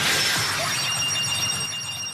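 A noisy, crash-like edited sound effect that slowly fades, with a few thin, steady high ringing tones coming in about halfway through.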